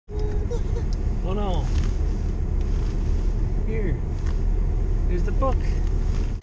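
Steady low road and engine rumble inside a moving car's cabin, with three short vocal sounds over it, the last heard as "book".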